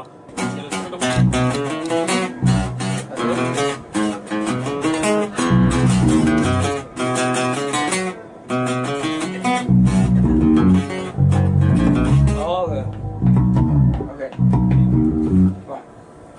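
Music of plucked guitar over a bass guitar line, with quick runs of picked notes and a short break just after the middle.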